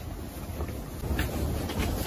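Hands pressing and squeezing a block of soft gym chalk until it splits in two, with faint crumbling over a steady low rumble that grows slightly louder toward the end.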